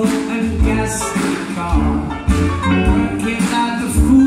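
Live band playing a song: acoustic guitar and horns over a heavy, irregular bass beat, with a male singer's voice.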